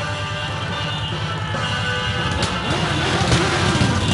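A column of motorcycles rumbles past, its engines pulsing low and growing a little louder near the end, with music playing over them.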